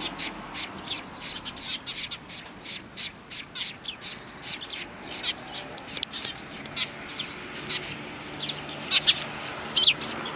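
Eurasian tree sparrows chirping, a steady run of short, sharp chirps at about three a second, the loudest near the end.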